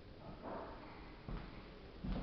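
A short sniff close to the microphone about half a second in, then a soft thump.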